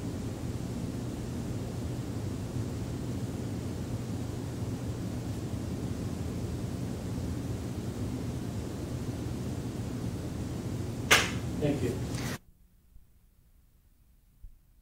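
Room tone: the steady low hum and hiss of a quiet room with nobody speaking. About 11 seconds in there is a sharp click, and a moment later the sound cuts off abruptly.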